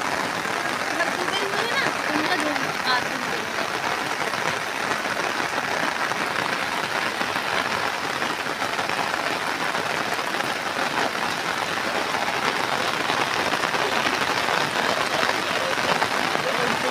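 Heavy monsoon rain falling steadily: a dense, even hiss with no breaks.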